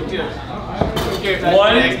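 A basketball hitting a small wall-mounted hoop: two quick knocks about a second in, amid crowd voices.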